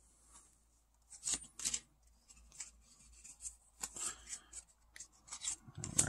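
Pokémon trading cards being handled, sliding and rubbing against one another: a string of short, faint, scratchy rustles with gaps between them, as the cards of a freshly opened booster pack are taken out and squared up in the hands.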